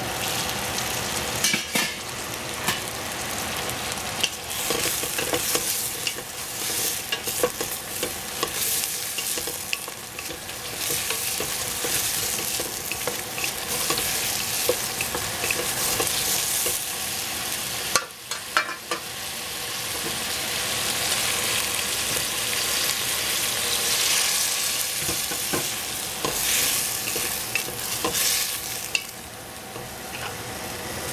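Baby squash sizzling in oil in a stainless steel pot, stirred with a wooden spatula that scrapes and knocks against the pot from time to time.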